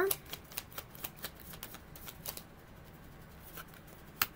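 A tarot deck being shuffled overhand: a quick run of soft card clicks over the first two seconds or so, thinning to a few scattered clicks after.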